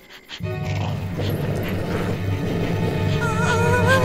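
Tense background music over a cartoon dog's low, steady growl.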